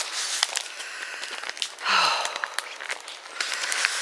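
A walker's breathy exhalations while climbing a path, with a voiced sigh about two seconds in that falls in pitch, over light scattered ticks and scuffs of footsteps.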